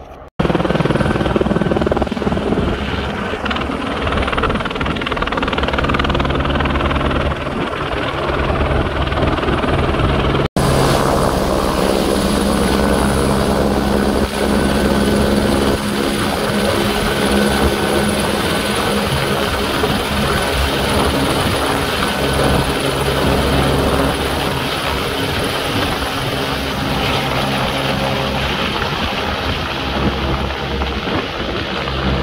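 Helicopter flying close by, with the fast steady beat of its main rotor and the high whine of its turbine. The sound cuts in abruptly just after the start and drops out for an instant about ten seconds in.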